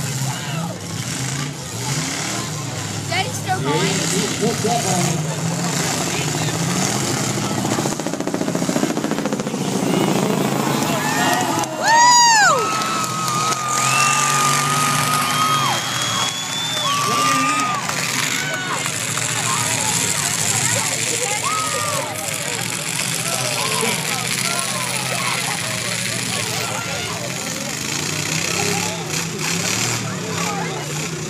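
Demolition derby car engines running in the arena under the noise of a large crowd of spectators talking and shouting. About twelve seconds in comes a loud rising-and-falling call, followed by a couple of held high tones.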